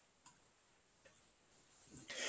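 Near silence: faint room tone with a steady high hiss and two faint clicks, about a quarter second in and about a second in, from a computer mouse button as an ellipse is dragged out and released.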